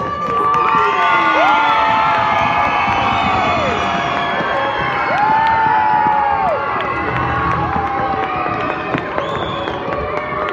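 A large crowd of schoolchildren cheering and shouting together, loud and sustained, with several long drawn-out shouts rising above the din.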